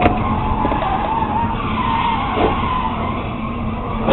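Car tyres squealing in a skid as a car loses control at highway speed: a long, wavering screech lasting about two and a half seconds over steady road noise.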